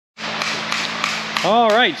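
Steady workshop background noise with a low, even hum; a man's voice starts about one and a half seconds in.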